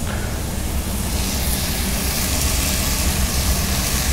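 Sofrito of onion, carrot, leek, garlic and tomato sizzling in a pan over a gas burner, the sizzle growing brighter about a second in. Under it runs the steady low rumble of a kitchen extractor hood.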